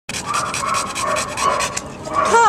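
An American Bulldog and Pit Bull mix panting open-mouthed in a quick, even rhythm, fading near the end.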